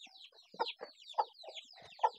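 Chickens clucking in short calls spaced a few tenths of a second apart, over continuous faint high-pitched chirping.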